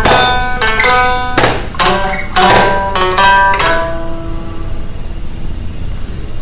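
Guitar playing a blues passage: a quick run of sharply picked notes and chords, then a single note left ringing for the last two seconds or so.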